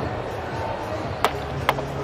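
Two sharp knocks about half a second apart as a cricket bat strikes the ball on a big swing, over a steady crowd murmur.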